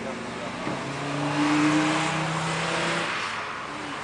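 A car engine running at a steady speed as the car goes past, swelling to its loudest about a second and a half in and then fading, with tyre and road hiss.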